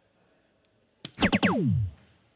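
A soft-tip dart hits a DARTSLIVE electronic dartboard with a sharp click about a second in, followed at once by the board's synthesized hit sound: several tones sliding steeply down in pitch, scoring a triple 20.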